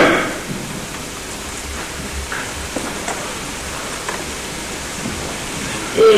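Steady hiss and room noise with no voice, broken by a few faint ticks and low thumps.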